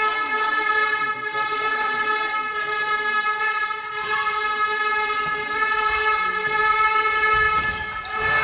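A horn held on one long, steady, fairly high note with a slight waver midway.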